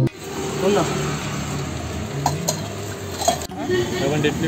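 Roadside food-cart cooking sounds: a steady hiss with a few sharp clinks of metal utensils, two close together a little past two seconds in and another just past three seconds, over background voices.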